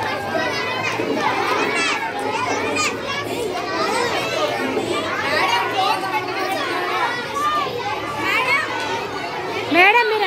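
A crowd of young children's voices chattering and calling out at once, many overlapping voices with no single speaker standing out.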